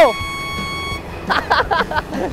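A steady electronic beep, one high tone held for about a second, marking the 'go' of a race start countdown.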